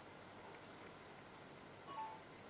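Quiet room tone, then near the end a short electronic beep of two close tones, stepping down in pitch.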